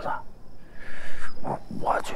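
Speech: a man speaks a short line of dialogue, opening on a breathy, hissing syllable.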